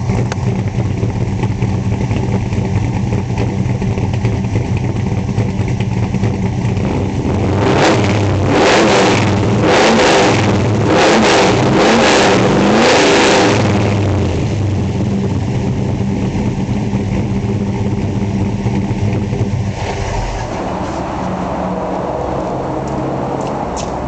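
Big-block Chevy V8 bored and stroked to 505 cubic inches, with a solid-lifter roller cam, heard at the tailpipes of its 3-inch dual exhaust with headers and Hooker Aero Chamber mufflers: it idles with a lopey cam rhythm. About a third of the way in it is revved about six times in quick succession, then it settles back to the lopey idle.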